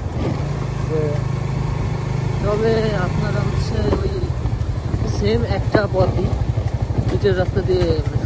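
Suzuki GSX-R150's single-cylinder engine running at a steady cruise while the motorcycle is ridden, a low engine note with a fast, even pulse.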